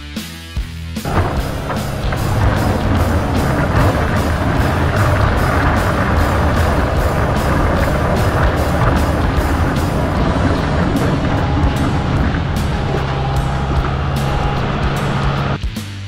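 Background rock music with a steady beat, over loud noise from a Kubota diesel tractor's engine and its front plow blade pushing snow, which comes in about a second in and stops just before the end.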